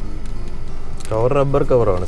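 A man talking, starting about a second in; before that only a low, steady background hum.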